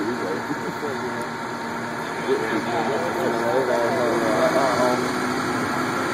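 An engine idling steadily under indistinct voices that start talking about two seconds in.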